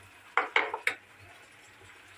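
A spoon knocking against the rim of a non-stick wok, three quick knocks in under a second, with a little ringing after each.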